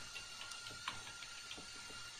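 Faint computer keyboard key clicks, a few scattered taps, as a short line of text is typed.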